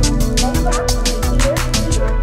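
Electronic music made in the Korg Gadget app: fast, evenly spaced ticking percussion over a steady bass, with short warbling synth notes.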